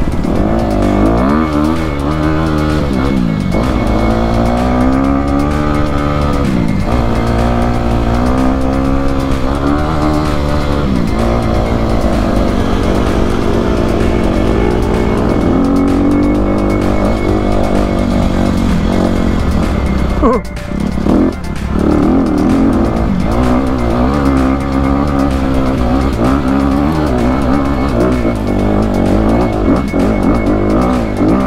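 Honda CRF250RX four-stroke single-cylinder dirt bike engine revving up and down as it is ridden along a rough trail, close up, with a brief drop in engine sound about two-thirds of the way through.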